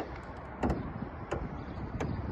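Hood latch of a Hyundai Tucson being felt for and worked by hand under the front edge of the hood, giving a few light clicks about two thirds of a second apart.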